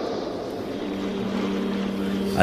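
A steady low drone over a faint hiss, with a held low tone coming in about a second in.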